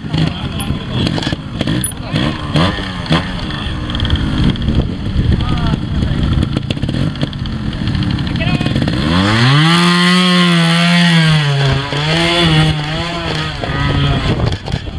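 A trials motorcycle engine blipping irregularly at a rocky section. About nine seconds in it revs up into a long high-pitched rev that holds, dips briefly and rises again before dropping away near the end.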